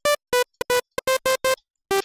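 Sytrus software synth playing a plain sawtooth wave in short, clipped notes, about eight in two seconds, with a pause near the end. The tone is sharp and crisp.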